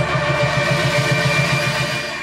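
Electronic theme music of a TV programme's opening titles: a held synthesizer chord over a quick, evenly pulsing bass.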